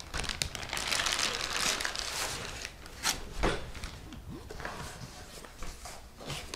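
Clear plastic packaging bag crinkling as it is handled and pulled open, densest in the first two and a half seconds. After that come a sharp tap about three seconds in and lighter, scattered rustling.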